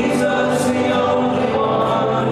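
Live worship band playing a contemporary praise song: guitars and keyboard with voices singing, at a steady level.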